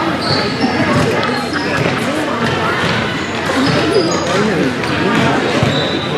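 Indoor field hockey play in a large echoing hall: several voices overlapping without letup, with scattered sharp knocks of sticks and ball on the hard floor.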